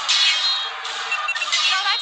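Cartoon battle sound effects of robot pirates fighting: a dense, noisy clamour with a short run of high electronic beeps about a second in and falling zaps.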